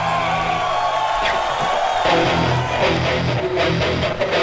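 Rock band playing live with electric guitar and bass. Held chords give way about two seconds in to a rhythmic bass-and-guitar figure.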